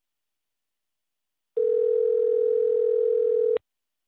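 Telephone ringback tone: one steady two-second ring starting about one and a half seconds in and cutting off sharply, the sound of an outgoing call ringing on the line before the other party answers.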